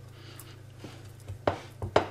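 Glass baking dish being greased by hand: fingers rubbing faintly against the glass, then a few short knocks near the end as the dish bumps on the wooden cutting board, the first knock the loudest.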